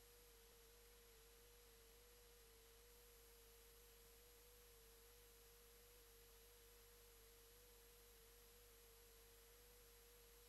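Near silence with a faint, steady mid-pitched tone that wavers slightly in pitch, and a fainter, very high steady whine over low hiss.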